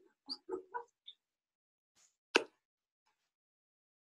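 Three short chuckles in the first second, then a single sharp click about two seconds later, the loudest sound here.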